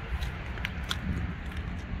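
A pickup truck's camper shell rear hatch being unlatched and lifted open: a few faint, short clicks over a steady low rumble.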